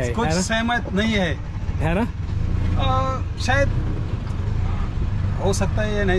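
Low, steady rumble of a motor vehicle under a man's speech, strongest in the middle few seconds when he pauses.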